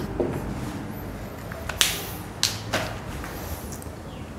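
Three sharp clicks within about a second, over a steady low room hum.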